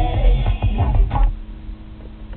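Music from a phone playing through a BMW 330i's car stereo speakers via the aux input, heavy in bass. It drops away about a second in as the head unit is switched off AUX.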